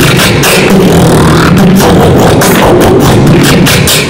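Beatboxing into a handheld microphone: a steady rhythm of vocal kick, snare and hi-hat sounds over a low bass line made with the mouth, with no instruments.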